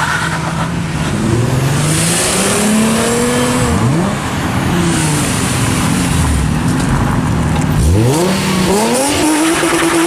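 Car engines revving hard: the pitch climbs, drops sharply about four seconds in, then climbs steeply again near eight seconds and settles on a high steady note as a Nissan 350Z's V6 holds revs with its rear tyre spinning in a burnout.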